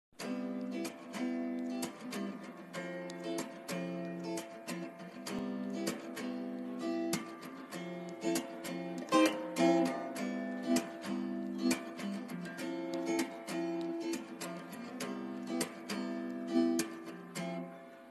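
Acoustic guitar music: strummed chords in a quick, even rhythm.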